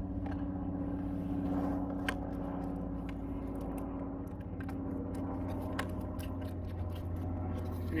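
Faint clicks and scrapes of a plastic vinyl-gutter joiner being handled and pressed onto the gutter end, over a steady low engine-like hum.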